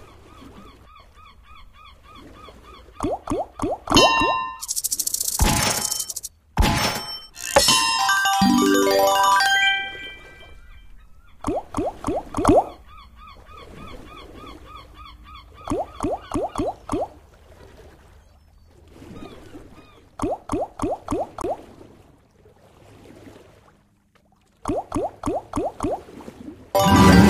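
Video slot game audio over a light looping tune: a quick run of clicks as the reels stop in turn, repeated for each of several spins. About five seconds in come a few loud whooshing bursts, then a rising run of chimes as a win is counted.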